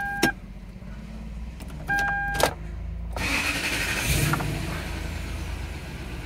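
Two short electronic beeps, each ending in a click, then a Toyota Sequoia's V8 being cranked and started about three seconds in, settling into running. The misfire code has just been cleared and its cylinder 2 ignition coil replaced.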